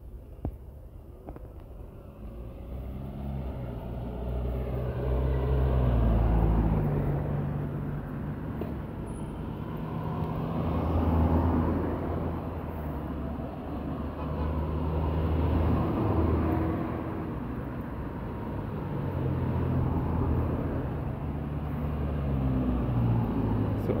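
Road traffic: cars passing one after another, the engine and tyre sound swelling and fading every few seconds.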